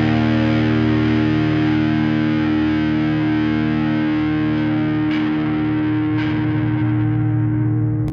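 Distorted electric guitar holding one chord and letting it ring out as the final chord of an emotional hardcore song, its top end slowly fading. Two faint clicks sound about five and six seconds in.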